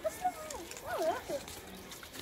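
Children's voices: short, high, sliding calls and chatter in the first second and a half.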